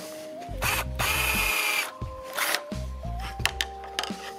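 Black & Decker cordless drill boring a hole through a piece of painted wooden baseboard: one run of about a second, then a short second burst.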